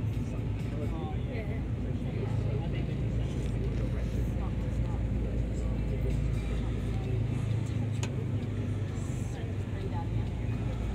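Tour ferry's engines running steadily underway, a continuous low drone heard from the open deck.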